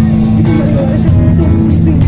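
A live rock band playing loudly through the PA, with amplified electric guitar and bass guitar.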